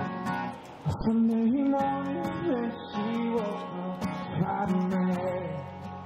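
Acoustic guitar strummed with a voice singing a melody of held notes that step up and down in pitch.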